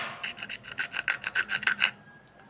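A small metal blade scraping along a wet slate pencil in quick rasping strokes, about seven a second, growing louder and stopping just before the end.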